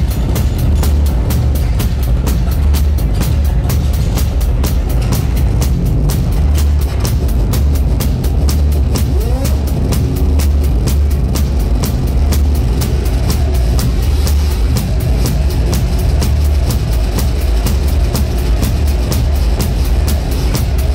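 Drum kit played live at speed over loud band music, with rapid, evenly spaced cymbal and drum hits and a heavy, booming low end, picked up close to the kit.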